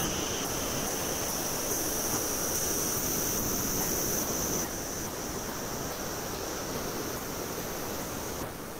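Steady hissing noise with a thin high whine in it. It starts abruptly and eases slightly about five seconds in.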